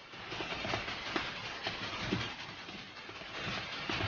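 Faint, steady background noise with a few soft clicks scattered through it.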